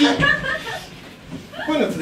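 Chuckling laughter in short bursts, one near the start and one near the end, mixed with a spoken word or two.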